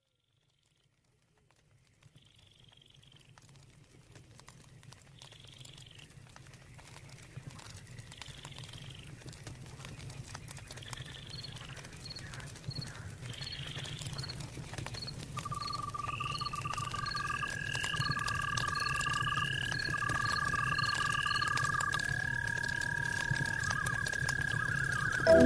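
Nature-sound intro to a new-age electronic track, slowly fading in: bird-like calls repeat every few seconds over a low rumble and crackle. About halfway through, faster chirps, pips and trills join, with a long held high tone that leads into the music.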